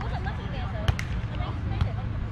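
A volleyball being struck by players' hands and forearms during a rally: two quick sharp hits about a second in and another near the end, over a steady low rumble.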